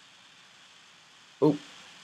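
A faint steady hiss on a video-call line, then a man's short spoken "oop" about one and a half seconds in.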